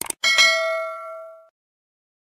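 Subscribe-button animation sound effect: two quick clicks, then a bright notification-bell ding with several ringing tones that fades out over about a second and a half.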